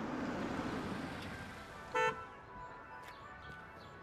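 Kia Stinger GT2 AWD driving up, its engine and tyre noise swelling and then fading away. A single short car-horn toot about two seconds in is the loudest sound, and faint music follows.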